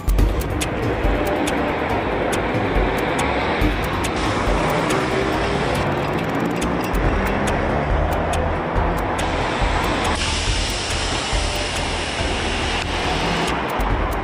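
Steady noise of street traffic, a dense hum of passing vehicles, changing in tone a few times as the recording is cut together.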